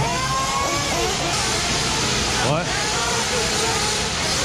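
Radio-controlled race cars running on the dirt track, a steady whirring hiss of motors and tyres that swells about a second and a half in, with voices around it.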